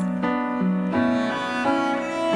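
Instrumental passage of a soft pop ballad between sung lines, with held string-like notes and piano chords changing about every half second.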